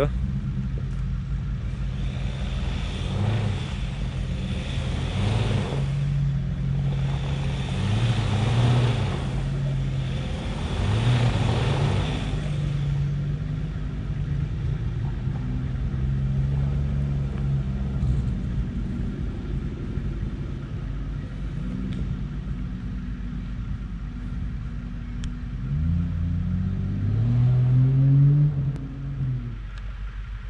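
Ford Ranger Raptor pickup's engine working under load up a steep loose dirt climb, revving in repeated surges with bursts of tyre noise on loose ground during the first half, and another rising rev near the end.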